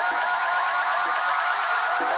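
Electronic dance music in a build-up: a steadily rising synth tone over a hiss, with the bass cut out.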